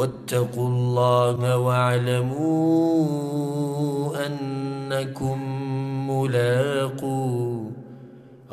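A man chanting classical Arabic verse in a slow, melodic recitation, holding long notes that step up and down in pitch. The chanting stops shortly before the end.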